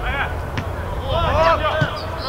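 Footballers shouting and calling to each other during play, several raised voices strongest in the second half, over a steady low rumble.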